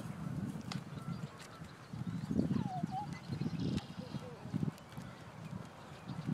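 Footsteps on an asphalt road: irregular low scuffs and steps from people and a dog walking, with a faint short voice sound about three seconds in.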